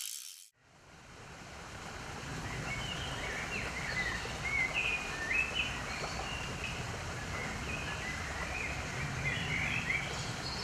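A brief rasp at the very start, then, after a short gap, outdoor ambience fades in: a steady low background hiss with small birds chirping and singing in short, repeated phrases.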